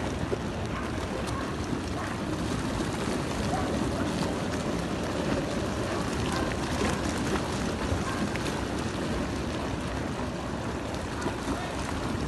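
Steady rushing noise of muddy runoff water flowing down the street after a mudflow, with faint voices in the background.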